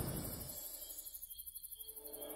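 Faint, rapid, evenly pulsing high chirring of crickets as night ambience, while the tail of the preceding music dies away.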